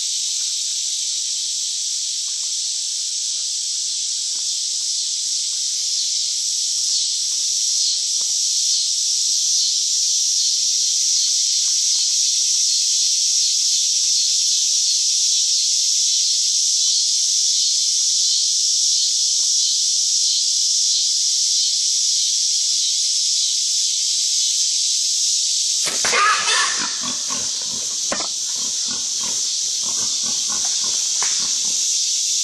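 Wild hogs at a feeder grunting in a short burst about four seconds before the end, over a steady high hiss that runs throughout.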